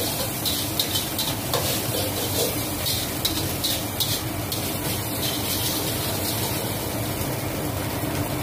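Fried rice stir-frying in a wok over a gas burner: steady sizzling, with the ladle scraping and clicking against the wok now and then.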